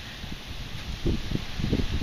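Wind buffeting the microphone in low, soft gusts about a second in, over a faint rustling hiss.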